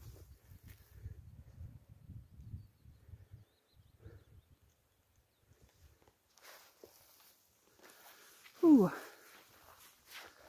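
A low rumble for the first few seconds, then quiet, then near the end one short vocal exclamation from a person that falls in pitch.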